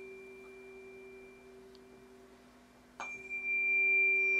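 Tuning fork ringing as a single high, steady tone that fades away. It is struck again about three seconds in and rings out loud and sustained. A low steady hum sits beneath it.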